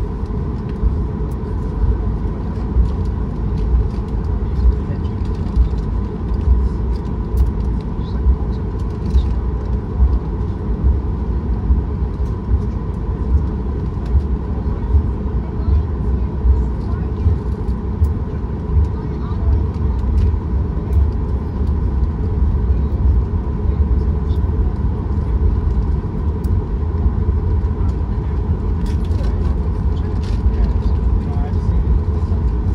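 Cabin noise of a Boeing 737 MAX 8 taxiing, heard from a seat beside the wing: the CFM LEAP-1B engines at taxi power give a steady low rumble with a constant thin whine above it. Small regular bumps come about once a second as the jet rolls.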